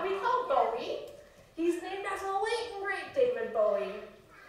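A woman's voice speaking in phrases, with short pauses between them.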